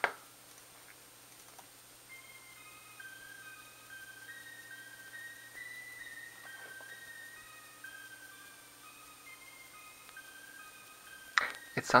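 Quiet music played back through the computer's audio interface: a slow melody of clear, high held notes, two or three sounding together at times, starting about two seconds in. It is a test of the reinstalled driver, and it sounds better, with the click issue seemingly resolved.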